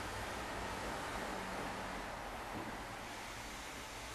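Steady, even hiss of room tone with no distinct events.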